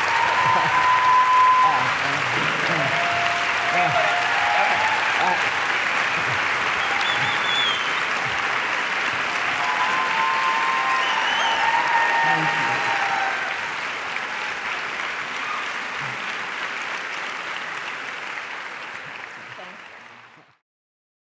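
A large theatre audience applauding, with some voices over the clapping. It eases off after about two-thirds of the way through and fades out at the end.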